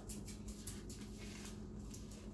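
Pages of a paperback book being flipped by hand: a run of faint, irregular papery rustles and flicks.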